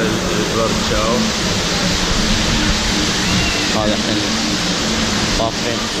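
Artificial waterfall splashing into a pool close by: a steady rush of water.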